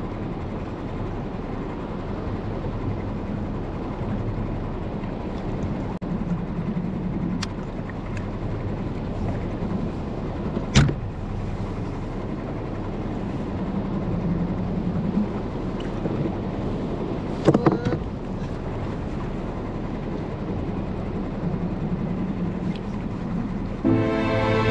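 Steady wind and water noise around a small skiff at sea, with a sharp knock about halfway through and a quick pair of knocks later on.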